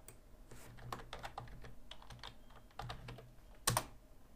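Computer keyboard being typed on: a short run of separate, irregular keystrokes, with one louder key press near the end.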